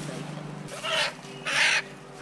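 Crows cawing: two short, harsh caws, about a second in and again near the end, with low voices murmuring underneath.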